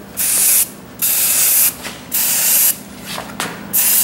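Aerosol spray-paint can hissing in four short bursts, each about half a second long, with brief pauses between them as black paint is laid on in light passes.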